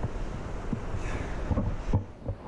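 Wind buffeting a camera's built-in microphone, a steady low rumble, with a faint knock or two near the end.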